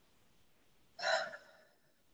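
A person's single short, sharp intake of breath about a second in, during an emotional pause.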